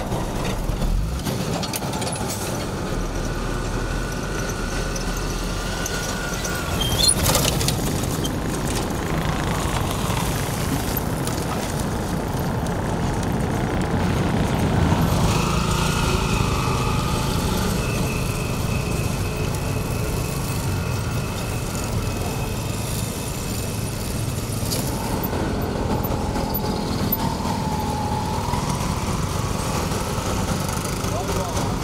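Road traffic: small-engined motorcycles and auto-rickshaws, with cars, running and passing steadily. A sharp knock sounds about seven seconds in, and a higher engine whine comes in about halfway through.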